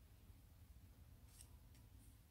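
Near silence: faint low room hum, with two faint, brief clicks about a second and a half in from a crochet hook working yarn.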